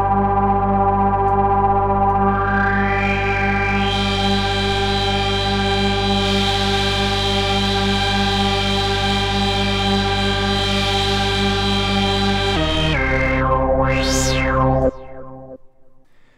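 FXpansion Strobe2 virtual analogue synthesizer holding one note from a stacked, detuned oscillator with sub-oscillators, its low end pulsing as the detuned copies beat, while its noise source is mixed in and the hiss grows over the first few seconds. Near the end the tone changes and a filter sweep rises and falls as the cutoff is turned, then the note cuts off about a second before the end.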